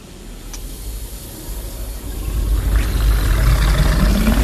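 A deep rumbling drone that swells steadily louder, with a hiss of rain above it.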